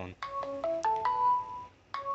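Smartphone ringtone playing a short melody of quick stepped notes that ends on a held note, then starts over near the end. It is an incoming call from the SIM800L GSM module, signalling that mains power is back.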